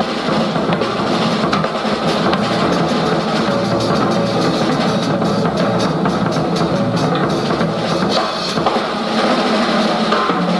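Jazz drum kit played in a busy run of rapid strokes on the drums and cymbals.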